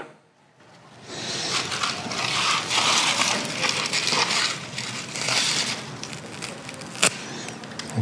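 Dry moss and fake grass fibres being pulled and ripped apart by hand, a steady crackling rustle with one sharp click near the end.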